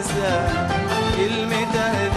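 Arabic song music: wavering melodic lines over a steady percussion beat.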